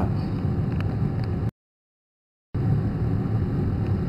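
Steady low rumbling background noise, broken by about a second of dead silence in the middle where the audio drops out.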